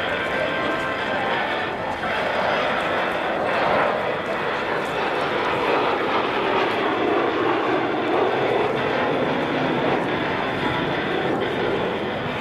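Jet noise from a Kawasaki T-4 trainer's twin turbofan engines during an aerobatic pass: a continuous roar that swells about four seconds in and then drops in pitch as the jet moves away.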